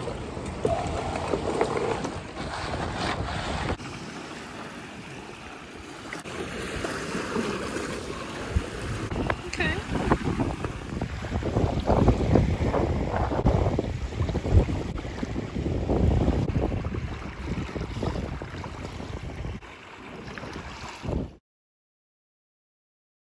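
Wind buffeting the microphone over small waves lapping on a lakeshore, in gusts that swell and fade. The sound cuts off suddenly near the end.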